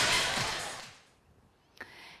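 Background music fades out over about the first second. A moment of silence follows, then a short noise as the studio sound cuts in near the end.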